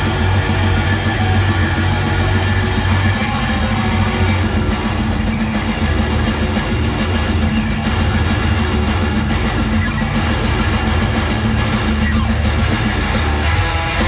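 Heavy metal band playing live through a PA, with distorted electric guitars and drum kit. It is loud and dense, with a heavy low end and no break, as heard from the audience.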